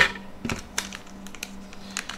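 A sharp click, then several lighter clicks and taps as a small stepper-driver board and loose electronic parts are handled and set down on a glass desktop.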